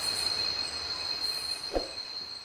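Night jungle ambience: a steady, high-pitched insect drone on one unbroken tone, with one brief low sound near the end.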